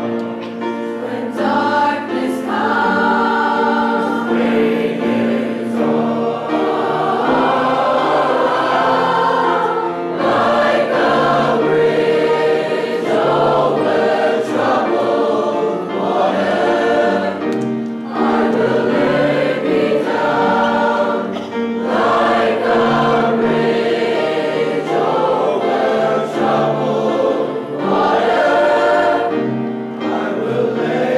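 Large mixed choir of student singers singing in long sustained phrases, with brief pauses between phrases.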